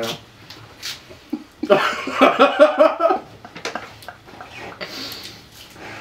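A man laughing for about a second and a half, starting nearly two seconds in, amid scattered short clicks and rustles of hard taco shells and paper wrappers being handled and eaten.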